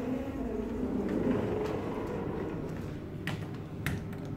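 Kone machine-room-less traction elevator running: a steady low mechanical hum with a faint whine, and two short sharp clicks near the end.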